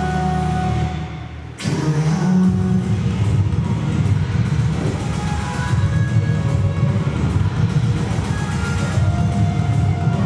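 Recorded dance backing music. It thins out briefly about a second in, then cuts back in suddenly, loud and bass-heavy, and carries on steadily.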